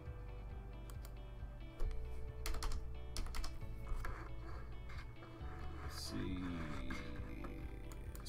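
Computer keyboard keys clicking in scattered presses, over quiet background music.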